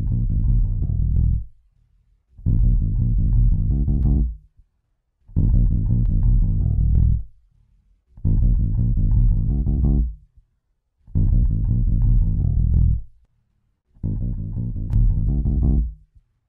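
A direct-input bass guitar recording looping through a Warm Audio WA273-EQ preamp. The same bass phrase of about two seconds plays six times, about every three seconds, with brief silences between. Its gain and EQ are being turned up for a fuller tone, with a little clipping that was already in the recording.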